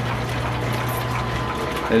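Line shaft running flat belts over cast-iron pulleys: a steady low hum with a faint, thin, high whine. The loose pulleys are running smoothly.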